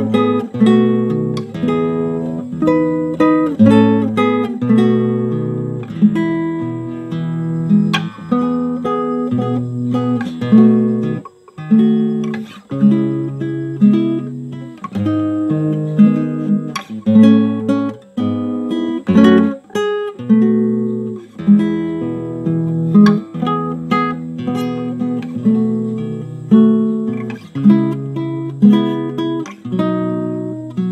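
Nylon-string classical guitar played fingerstyle: a hymn tune picked as melody over bass notes and chords, with a brief break about eleven seconds in.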